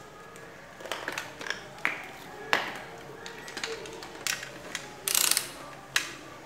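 Hands handling an analog multimeter and its test leads: a scattered series of small plastic clicks and knocks, then a short scraping rustle about five seconds in, as the meter is set up to test the louver safety switch for continuity.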